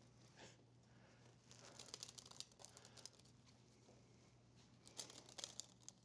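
Near silence with faint rustling and ticking of a deck of playing cards being handled, in small clusters about two seconds in and again near five seconds.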